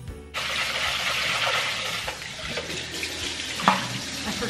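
Kitchen faucet running water into the sink, a steady rushing hiss. One sharp clack of a dish near the end.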